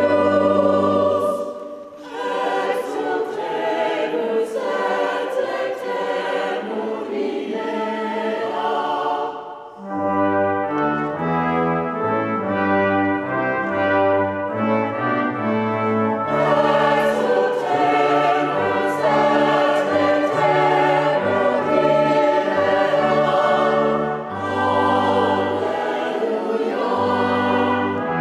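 Choir singing with instrumental accompaniment, in held chords over a moving bass line. The music eases off briefly between phrases, about two seconds in, near the middle and again near the end.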